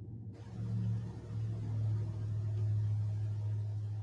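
A steady low hum with a few faint overtones, growing slightly louder about a second in.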